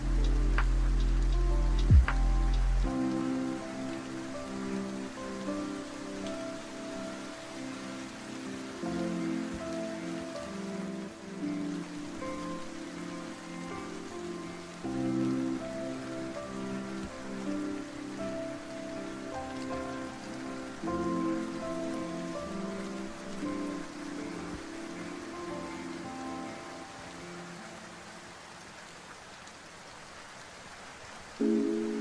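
Steady rain with soft, chill lofi music over it. A deep bass line drops out about three seconds in, after two sharp clicks in the first two seconds. The music gets quieter near the end.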